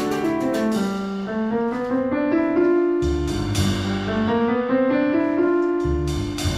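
Live jazz-classical quartet music led by grand piano, with classical guitar, plucked double bass and drum kit; deep bass notes come in strongly about halfway through and again near the end.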